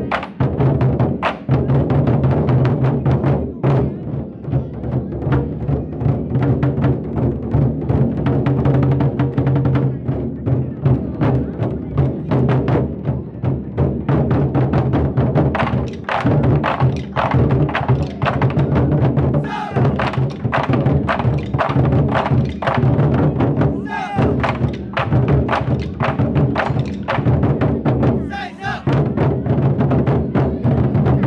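A drum corps of large lion-dance drums beaten together with sticks in a fast, driving, continuous rhythm.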